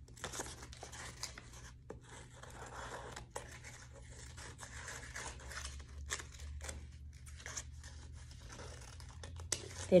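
Scissors snipping through painted paper in short irregular cuts, with the paper rustling and crinkling as it is turned and pulled free, over a low steady hum.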